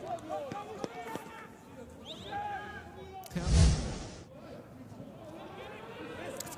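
Faint voices of footballers calling out on the pitch in an empty stadium, with no crowd noise. A short, loud burst of noise comes about three and a half seconds in.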